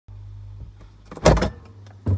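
A refrigerator door being pulled open, with one loud clunk about a second in, over a steady low hum.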